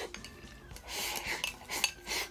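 Chopsticks scraping and clicking against a rice bowl held to the mouth as rice is shovelled in, with a longer scraping stretch midway and a couple of sharp clicks near the end.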